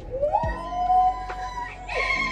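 Singing voices holding long high notes over a beat. One note slides up and is held, and a new, higher note comes in at the end, with low drum-like thuds under them.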